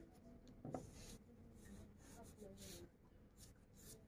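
Faint pencil strokes scratching on a sheet of drawing paper, light and intermittent.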